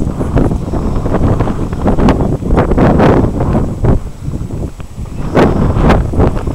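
Strong wind buffeting the microphone in uneven gusts, a loud low rumble that surges and falls.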